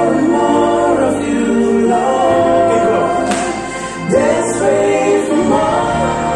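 Three men's voices singing gospel worship together, holding long notes and sliding between pitches, with a short drop in loudness about four seconds in before the singing swells again.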